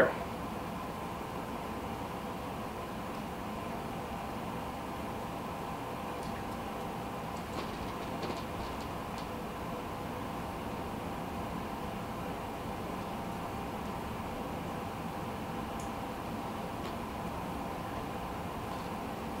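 Steady room hum with a faint steady tone in it, and a few faint, brief ticks about six to nine seconds in and again near the end.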